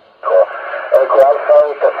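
A man's voice received over an amateur FM radio, relayed through the ISS repeater, sounding narrow and tinny as he calls out call-sign letters in the phonetic alphabet. The transmission comes in about a quarter second in, after a brief dropout, with a couple of faint clicks about a second in.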